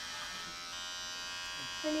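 Electric hair clippers buzzing steadily while cutting hair, running without a guard attachment.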